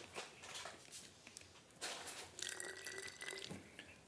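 Cachaça being poured from a can into a plastic bottle packed with malagueta peppers: a faint trickle of liquid, with a short louder patch about halfway through.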